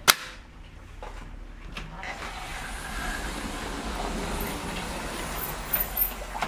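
A sharp metal click as the crescent lock on an aluminium sliding window is turned. From about two seconds in, a rushing noise swells and holds, with a couple of small clicks near the end.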